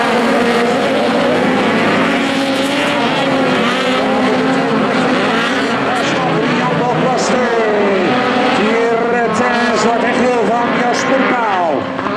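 A field of VW Beetle autocross cars racing on a dirt track, several air-cooled flat-four engines running at once. Their pitches keep rising and falling as the drivers accelerate and back off through the corners.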